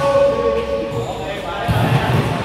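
Players' voices calling out across a large sports hall, one call held for about a second, with a volleyball thudding on the court floor near the end.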